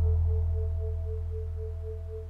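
Meditation music: a deep low hum under a higher tone that pulses about five times a second, with a fainter steady tone above, all fading slowly as the ring dies away.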